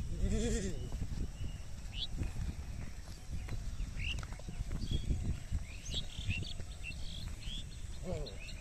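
Yoked bullocks drawing a wooden plough through dry, cloddy soil: dull hoof falls and the plough scraping through the earth over a low rumble. A short wavering call comes about half a second in, and small birds chirp.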